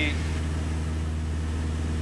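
Steady drone of a 1966 Mooney M20E's four-cylinder Lycoming IO-360 engine and propeller at cruise power in level flight, heard inside the cabin.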